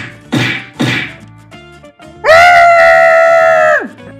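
Two cartoon whoosh-and-whack fight sound effects in quick succession, then a long, loud held yell that drops in pitch as it cuts off, over light background music.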